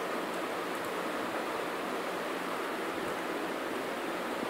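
Steady background hiss from the recording microphone and room, with no distinct events.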